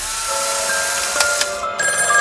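Edited-in music and sound effect: a loud hissing noise over held musical tones that starts suddenly, with bright chime-like tones joining near the end.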